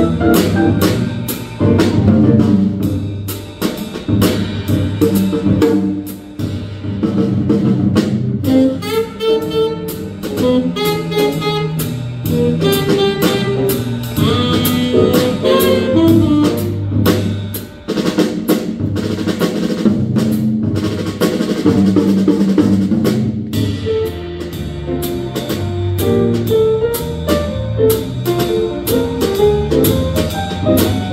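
Live small jazz group playing: a drum kit with cymbals and an electric bass walking underneath, with a higher melody line coming in over them around the middle.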